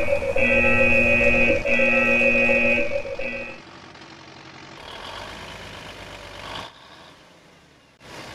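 A horn-like sound effect of several steady tones together, sounding three long blasts and a short fourth, stopping about three and a half seconds in. A quieter rushing noise follows and fades out near the end.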